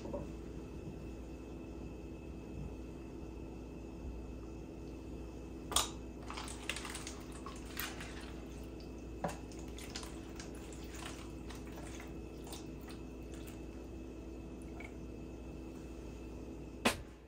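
Warm water poured from a glass jar into a plastic seed-starting tray of dry peat pellets, faintly trickling and dripping, mostly from about six to thirteen seconds in, with a knock just before and a click partway through. A steady low room hum runs under it.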